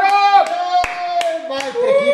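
A few scattered hand claps, about half a dozen, over a long held voiced cheer.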